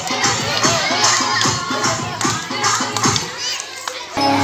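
Music with a fast, steady beat for a kolatam dance, under a crowd of schoolchildren shouting and chattering.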